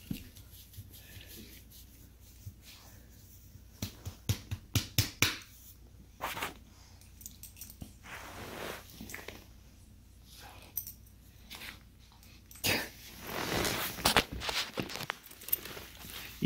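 Two dogs play-wrestling on carpet: scuffling with short sharp snaps and huffs. They come in bursts about four to five seconds in, again around six seconds, and in a longer flurry near the end.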